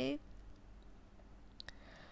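Quiet room tone with a couple of faint, sharp clicks about three-quarters of the way through, after a spoken word trails off at the start.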